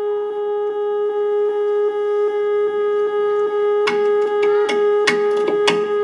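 Live duo music: a soprano saxophone holds one steady note softly. About four seconds in, a steel-string acoustic guitar comes in with a quick run of short, sharp strikes.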